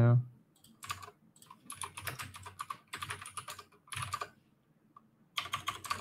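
Typing on a computer keyboard: several short bursts of quick keystrokes with brief pauses between them.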